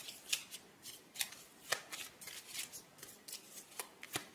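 Tarot cards being shuffled by hand: an irregular string of short, crisp card snaps and swishes.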